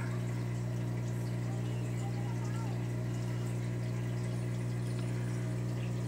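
Aquarium air pumps and filters running: a steady low hum with a faint trickle of water.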